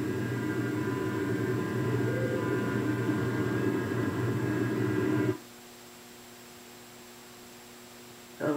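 Playback of a field audio recorder's recording of an empty room: a steady hiss and hum that cuts off suddenly about five seconds in.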